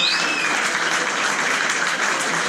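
Audience applauding steadily, with a brief high whistle at the very start.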